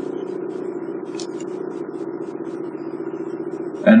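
A steady low buzzing hum with faint scattered ticks.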